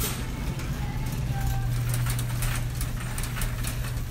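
Supermarket background noise: a shopping cart rattling and clicking as it is pushed along, over a steady low hum.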